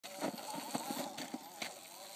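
Oset electric trials bike being ridden: a faint, wavering whine from its electric motor, with irregular knocks and rattles.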